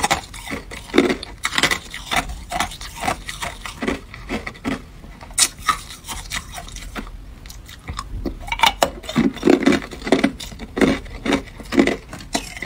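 Clear ice cubes clinking and scraping against each other and the plastic tub as a hand picks through them, with crunching of hard ice being chewed. The clicks come in quick irregular clusters, busiest near the end.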